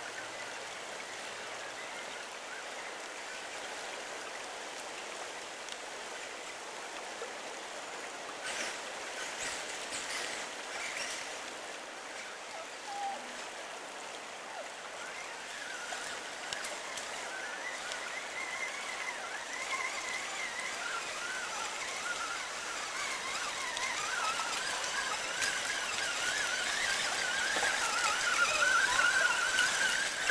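Running water of a shallow stream, with a high whine that wavers in pitch from about halfway through and grows louder toward the end: the brushless motor of a Traxxas Summit RC crawler driving through the water. A few light clicks come about nine to eleven seconds in.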